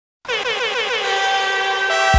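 Synthesizer chord opening an electronic pop track. It starts abruptly a quarter second in, wobbles in pitch about five times a second at first, then holds steady, with no bass under it.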